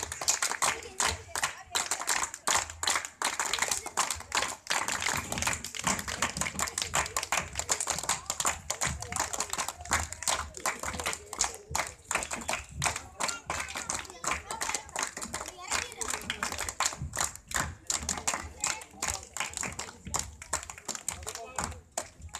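Dense, irregular clapping of many hands mixed with voices, starting suddenly.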